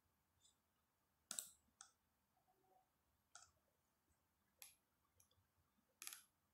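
A handful of faint, sharp computer mouse clicks, spaced unevenly over a few seconds against near silence. The first, a little over a second in, is the loudest.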